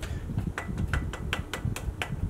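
Rapid light metallic clicks and taps, about five a second, from fingers working on an aluminum-and-brass desk clock case.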